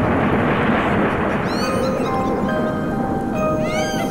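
Intro music: held steady tones over a dense, noisy wash, with quick high arching glides about a second and a half in and again near the end.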